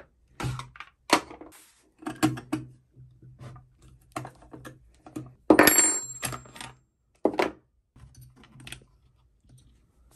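Plastic clicks, taps and knocks as the rear and top covers of a Stihl chainsaw are unlatched and lifted off by hand, with one louder clatter and a brief high ring about five and a half seconds in.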